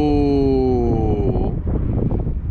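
Whine of the flying wing's F540 4370KV brushless RC car motor and propeller, its pitch sliding slowly down and fading out about a second and a half in. Heavy wind noise on the microphone runs underneath.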